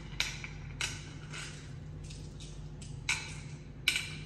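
Hard Ayo seeds dropped one at a time into the cups of a wooden Ayo board, each landing with a sharp click, about one every half second, loudest just after the start and just before the end.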